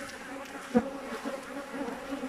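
Honey bees buzzing in a steady hum around an opened hive, with one sharp knock a little before a second in.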